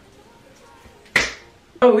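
A single short, sharp snap about a second in, over quiet room tone, followed near the end by a woman starting to speak.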